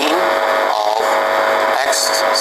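Brief bits of a teacher's speech over a steady electrical hum and hiss from the recording.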